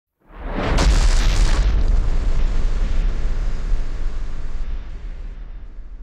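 A booming intro sound effect. A loud boom sets in about a quarter second in, crackles through its loudest first second and a half, then rumbles away slowly over the following seconds.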